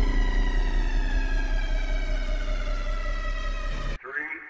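Electronic logo sting: a sustained drone with many overtones gliding slowly down in pitch over a deep bass hum, cutting off abruptly at the end.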